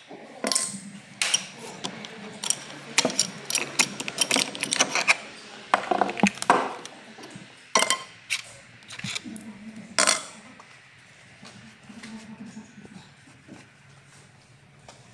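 Metal engine parts clinking and clanking as a motorcycle clutch assembly is worked off its shaft and set down on a workbench. There is a run of sharp metallic knocks and clinks, the loudest about ten seconds in, then quieter handling noise.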